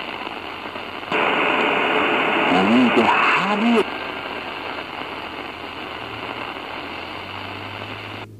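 Portable Tecsun PL-450 radio being tuned down the medium-wave band, its speaker giving hiss and static. About a second in, a station comes in louder with a voice for roughly three seconds. It then drops back to fainter static as the tuning moves on.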